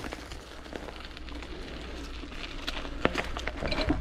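Bicycle rolling along a dirt and gravel path: tyre crunch and rattle over an even low rumble, with a few sharp clicks near the end.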